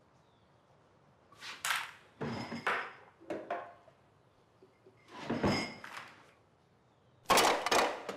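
A hard walnut in its shell being struck repeatedly with a metal tin on a wooden tabletop: five sharp knocks with a slight metallic ring, the last the loudest. The shell is too hard to crack easily.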